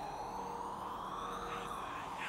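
Intro sound effect: a synthetic tone that slowly rises and then falls in pitch, over a steady hiss.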